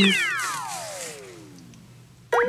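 Cartoon falling-whistle sound effect: a quick upward swoop, then one long descending whistle that sinks lower and fades away over about two seconds.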